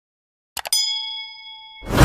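Subscribe-button animation sound effects: two quick mouse clicks about half a second in, then a bright bell ding that rings for about a second. Near the end a loud whoosh cuts in.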